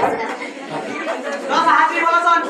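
Several people talking over one another in a hall, with one voice louder near the end.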